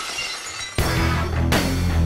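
Music of an animated logo intro: a ringing sound fading out, then a loud hit with deep bass about three-quarters of a second in and a second hit about half a second later.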